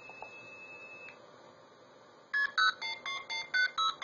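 Blue box playing back a stored sequence through a telephone earpiece: a steady 2600 Hz trunk-seizure tone for about a second, then after a short gap a run of short two-tone MF digit beeps, about four a second, at the slow dialing speed.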